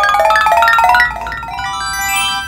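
Magic wish-granting sound effect: a quick rising run of bell-like notes, climbing until about a second in, then a held shimmering chord.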